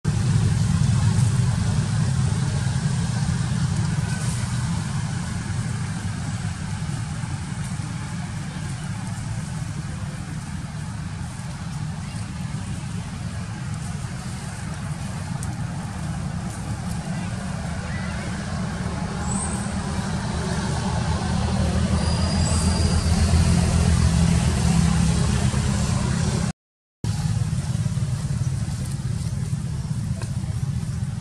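A steady low rumble, with faint distant voices in the middle, cut off for a moment near the end.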